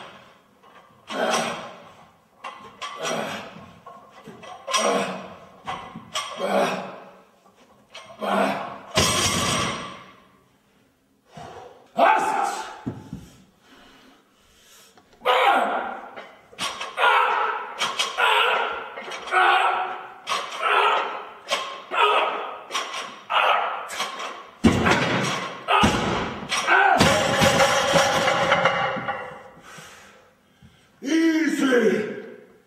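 A man's forceful grunting breaths, one with each rep of a barbell upright row, about one a second. A heavy thud of the bar comes about a third of the way in, and a few more thuds come near the end.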